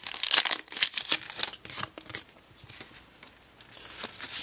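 Foil Pokémon trading-card booster pack being torn open and its wrapper crinkled, busiest in the first second, then a few scattered crackles that die away.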